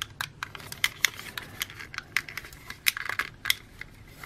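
Light plastic clicks and snaps, several a second at an irregular pace, as a transforming action figure's plastic parts and hinges are shifted and pressed into place by hand.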